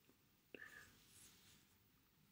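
Near silence: room tone, with one faint click and a brief breathy vocal sound from a person about half a second in.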